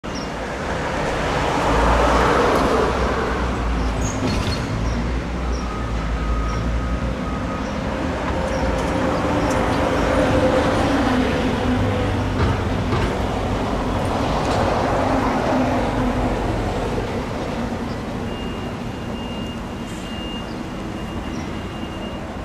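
Road traffic passing close by: a steady rumble of engines and tyres that swells as vehicles go past, loudest about two seconds in and again around ten and fifteen seconds.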